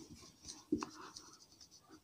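Marker pen writing on a whiteboard: a few faint, short strokes as a word is written.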